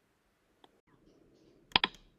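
Near silence, then a quick cluster of several sharp clicks near the end.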